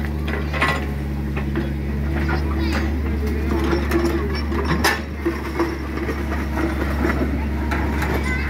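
SANY mini excavator's diesel engine running steadily while it digs, with scattered knocks and scrapes of the bucket on soil and broken concrete. The engine's low hum thins out briefly a little before the middle.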